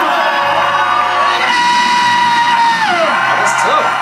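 Music: a steady bass line under a long held note that slides down about three seconds in.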